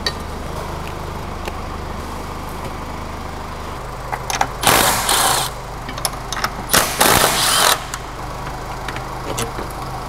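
Cordless impact wrench running in two short bursts about two seconds apart on the bolts of a rear stabilizer bar bracket on the car's underbody, over a steady low workshop hum.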